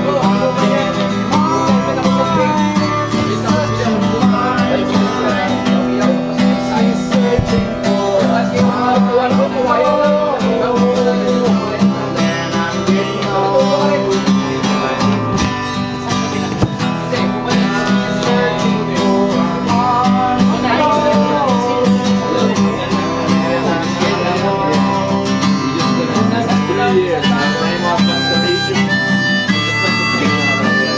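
Acoustic guitar strummed in a steady rhythm, with a harmonica in a neck holder playing a wavering melody over it: a one-man-band guitar-and-harmonica instrumental.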